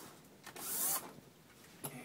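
Cordless drill-driver run once for about half a second, backing out the screw on the foil dryer vent duct's clamp, with a click near the end.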